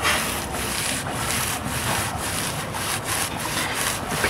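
Masonry paintbrush scrubbing masonry paint into rough pebbledash render: bristles rasping over the stones in repeated back-and-forth strokes, about two to three a second.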